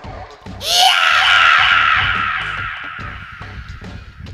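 A loud, shrill scream that breaks out about half a second in and trails away over the next few seconds, over background music with a low beat.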